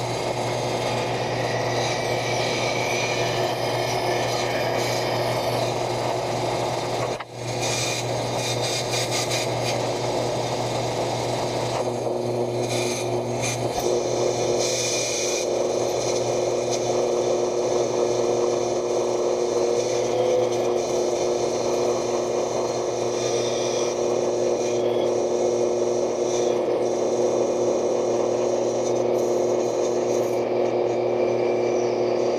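Bandsaw running and cutting through a block of African padauk: a steady motor hum under the rasp of the blade in the wood. The sound drops out briefly about seven seconds in.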